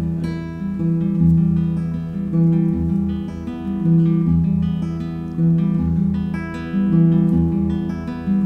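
Acoustic guitar playing solo: a steady run of plucked chords over changing bass notes.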